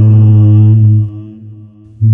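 A solo voice chanting a Pali Buddhist pirith verse, holding the final syllable of the phrase on one steady low note that fades away from about a second in.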